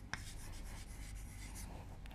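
Chalk writing on a chalkboard: faint scratching strokes as a word is written, with a short tap of the chalk just after the start.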